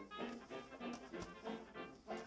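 Quiet background music with brass instruments, playing in a pause of speech.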